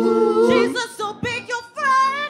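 A choir of women singing together. A held chord breaks off less than a second in, short sung phrases follow, and a new held note starts near the end.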